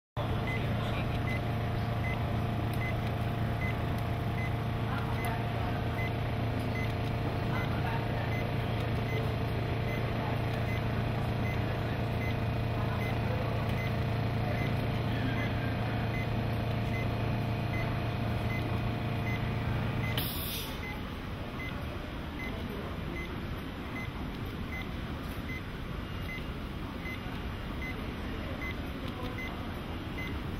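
Steady low machine hum from the patient-simulator equipment, with a faint short patient-monitor beep a little more than once a second, in time with the simulated heartbeat. About 20 seconds in the hum cuts off with a click, leaving quieter room noise and the beeps.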